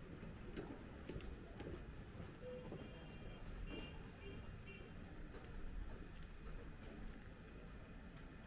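Quiet street ambience: a low, steady background with faint scattered clicks, like light footsteps, and a few brief, thin high-pitched chirps near the middle.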